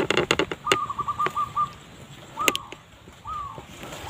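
Zebra dove (perkutut) cooing: a quick run of about eight short coos, then single downslurred coos spaced about a second apart. A few sharp clicks fall near the start and about two and a half seconds in.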